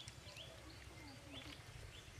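Faint outdoor ambience: small birds chirping repeatedly in short quick calls over a steady low rumble.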